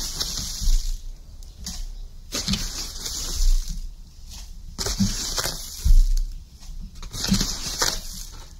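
Potassium nitrate granules being spooned out of their bag and tipped into a plastic tub on digital scales: several dry, rustling scoop-and-pour sounds in a row, with light knocks of the spoon.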